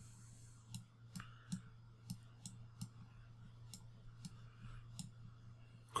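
Faint computer mouse clicks, about a dozen at an irregular pace, as letters are drawn stroke by stroke on a digital whiteboard. A low steady hum runs underneath.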